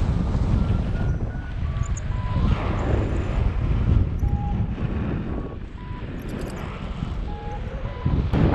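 Wind rushing over the camera microphone of a paraglider in flight, a steady low rumble that eases slightly in the second half. Faint short beeps at shifting pitches come and go over it.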